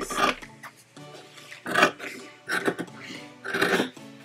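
Fabric shears snipping through a trench coat sleeve, several separate cuts, over quiet background music.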